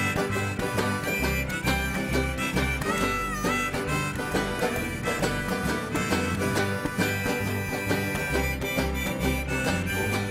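Acoustic bluegrass-style band playing an instrumental break. A harmonica on a neck rack carries the melody with held notes, one bending about three seconds in, over banjo, acoustic guitar and upright bass.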